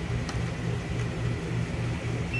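A steady low machine hum that pulses about four times a second, with a faint tick a little after the start.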